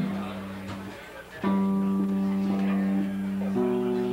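Electric guitar chords struck and left to ring: the first fades over about a second, a new chord is struck about a second and a half in and held, and another is struck near the end.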